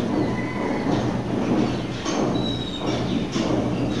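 Marker pen writing on a whiteboard: scratchy strokes with a couple of short high squeaks, over a steady low hum.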